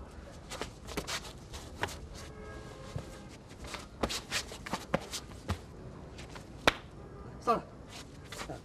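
Martial-arts sparring at close range: scattered sharp slaps and knocks of blows and grips landing on bodies, with shoes scuffing on stone paving. The sharpest hit comes about two thirds of the way through.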